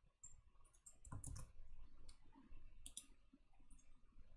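Faint, scattered clicks of a computer mouse as the page is scrolled, a few close together about a second in and again around three seconds.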